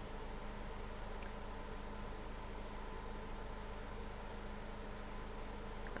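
Faint steady hum and hiss of room tone, with one faint click about a second in.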